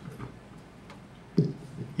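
Handling noise from a handheld microphone over quiet room tone: a few light clicks, then a short thump about a second and a half in.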